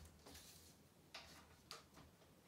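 Near silence, with three faint soft taps as a paper card is handled against a whiteboard.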